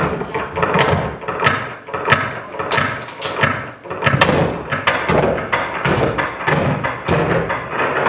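Live harsh noise: an amplified object struck and handled, a dense, irregular run of loud knocks and clatter, several a second.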